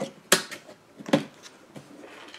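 A few short, sharp knocks and clicks from a wooden art-set box being handled and shifted on a tabletop, the two loudest about a third of a second and just over a second in.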